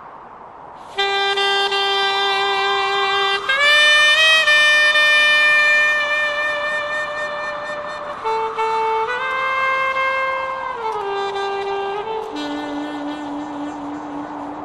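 A lone wind instrument of a funeral band plays a slow, mournful melody of long held notes. It starts about a second in.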